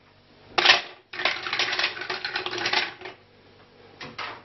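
Mussel shells clattering against each other and the side of a stainless steel pot: a short burst of clicks about half a second in, then about two seconds of dense, rapid rattling that stops about three seconds in.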